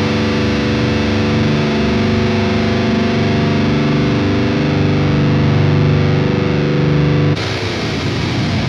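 Heavily distorted baritone electric guitar with an aluminum neck, playing low, held chords that ring steadily. About seven seconds in, the sound changes abruptly to a brief, noisier passage.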